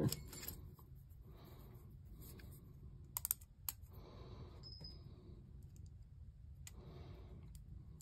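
Faint handling clicks of small metal screws, nuts and plastic spinner blades being fitted together by hand, with a few sharper clicks a little past three seconds in.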